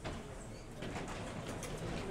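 Faint room noise of a lecture room: indistinct low voices and a few light knocks of movement.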